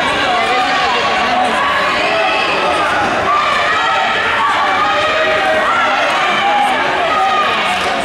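Spectators' overlapping chatter and calls in a gymnasium: many voices at once, steady throughout, with no single speaker clear.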